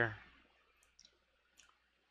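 A man's voice trails off at the start, then near-quiet with a few faint, sharp clicks around the middle.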